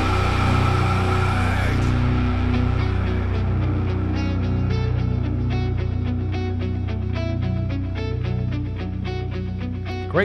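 Progressive metal band with drum kit playing: a loud full-band passage with cymbal wash drops back about two seconds in to a quieter build-up of sustained low notes under a steady run of light drum hits, the snare drum played with its snare wires off.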